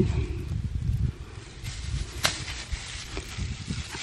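Rustling of tomato vines and dry grass being pushed through and handled, over a low, uneven rumble, with one sharp click a little over two seconds in.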